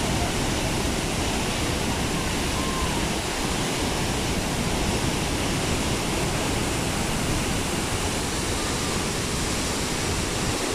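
Murchison Falls on the River Nile, heard close up from the rim of the gorge: a loud, steady, unbroken rush of falling water.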